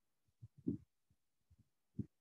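A few faint, low thumps of computer keyboard keys being typed, with near silence around them.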